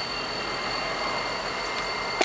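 CSX SD40-3 diesel-electric locomotives idling, heard from a car driving past: a steady mix of diesel engine noise and road noise.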